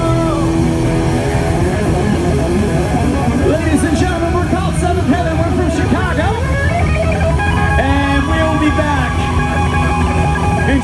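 Live rock band with electric guitars and bass: a sustained final chord stops about half a second in, then many voices cheering and shouting over loose guitar playing, and held guitar notes return near the end.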